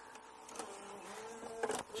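Cabasse six-disc CD changer in a Renault Espace IV drawing a disc into its slot: a faint motorized whir with a steady tone that stops about a second and a half in.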